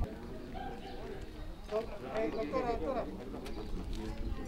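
Faint distant voices, with a bird calling, over quiet outdoor background noise.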